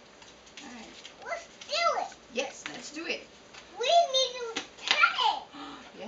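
A toddler's high-pitched voice in short wordless calls or babble, with louder bursts about two, four and five seconds in.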